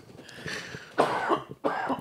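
A man coughing: a soft breathy start, then two hoarse bursts from about a second in.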